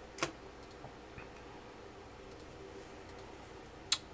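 Bowman Chrome baseball cards being handled and flipped through by hand: a click just after the start, a sharper one near the end, and faint ticks in between.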